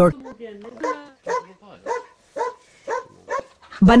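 A dog barking repeatedly, short barks about two a second, after a brief voice at the start.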